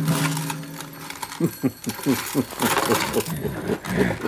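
A held low musical chord dies away about a second in. Then comes a rapid run of short vocal sounds, each falling in pitch, about five a second.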